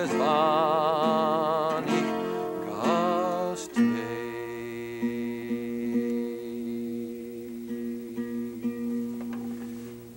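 A man singing with vibrato to a twelve-string acoustic guitar. The voice stops about four seconds in, and the guitar plays on softly, growing quieter near the end.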